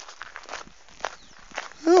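A person walking: a few soft, irregular footsteps, with a man's brief exclamation near the end.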